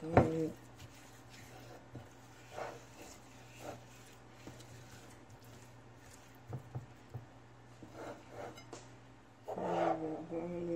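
A bare hand rubbing and pressing dry seasoning into raw chicken wings on a ceramic plate: faint, scattered soft rubbing and squishing. A sharp knock comes right at the start, and a brief pitched voice sound comes at the start and again near the end.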